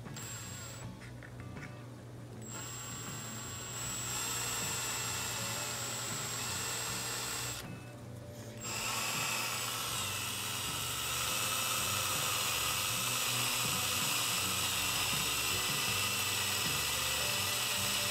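Ryobi P277 18V cordless drill running slowly with a 3/8-inch bit, boring through a plastic bottle cap, driven gently so the lid does not crack. The motor whine starts about a second in and gets louder around four and eleven seconds in. It stops for about a second near the eight-second mark, then carries on.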